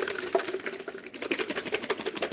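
Lidded glass jar of salad dressing shaken hard, the liquid and seasonings sloshing and knocking inside in quick, even strokes.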